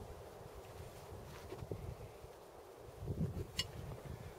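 Quiet handling of a Breda Model 37 heavy machine gun over a low background rumble, with one sharp click near the end as a hand reaches the rear of the receiver.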